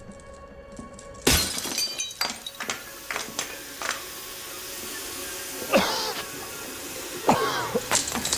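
A pane of window glass shatters in a sudden loud crash about a second in. Fragments tinkle and scatter for a few seconds after, over a film score. Two swooping sound effects follow near the end.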